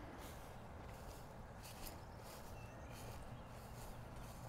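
Faint outdoor ambience: a low steady rumble with a few soft rustles.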